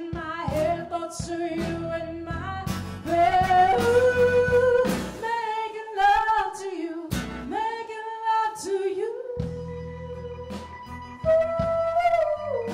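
Live band music with a singer holding long notes that slide up and down between pitches, over a steady low accompaniment with short percussive strokes.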